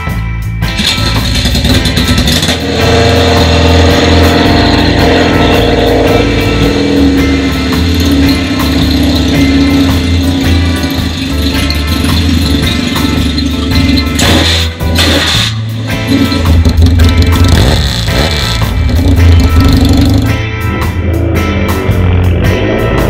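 Background guitar music over a 1979 Kawasaki KZ750 parallel twin being kick-started and then running steadily.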